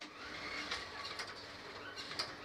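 Industrial sewing machines running, a steady mechanical noise with a few sharp clicks.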